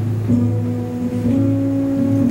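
Trumpet-family horn playing two long, low, mellow notes, about a second each, the second a step higher, over a steady low drone.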